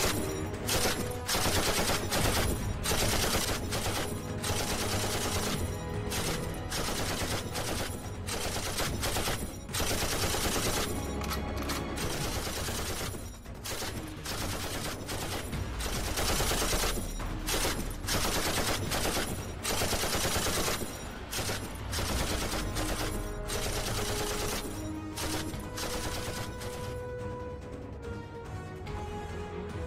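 Rapid bursts of gunfire, like a machine-gun sound effect, running almost without a break over background music.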